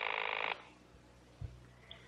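Telephone bell ringing with a steady rattling ring that cuts off about half a second in. A faint soft thump follows a little past the middle.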